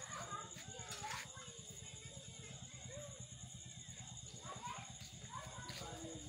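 Faint voices of people talking in the background over a steady low hum, with a thin high whine running throughout.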